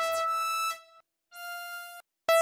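Tone2 Electra2 software synthesizer auditioning lead presets: one held bright note lasting under a second, then after a short gap a quieter, slightly higher note from the next preset.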